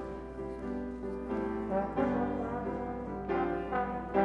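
Slide trombone playing a melody over grand piano accompaniment, the notes held and changing about every half-second to a second.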